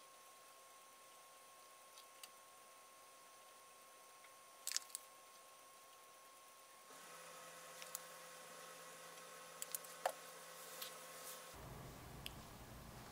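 Near silence: faint room tone with a few soft, faint clicks, a pair about five seconds in and a few more near ten seconds in.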